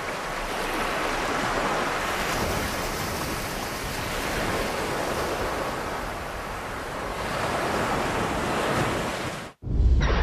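Ocean surf washing in, swelling and easing in slow waves. It cuts off suddenly near the end, and a loud deep rumble begins.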